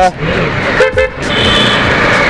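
Road traffic heard from a slow-moving motorcycle, with steady wind and road noise; a high-pitched vehicle horn starts honking a little past halfway through.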